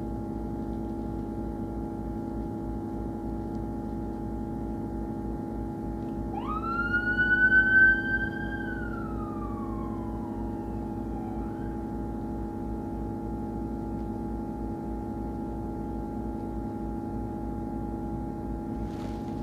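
An emergency vehicle's siren gives a single wail: it rises quickly about six seconds in, holds high for a couple of seconds, then slides slowly down and is gone by about eleven seconds. Under it is the bus's steady engine hum.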